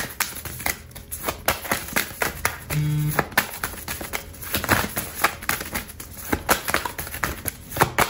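A deck of oracle cards being shuffled by hand: a run of quick, irregular card clicks, several a second.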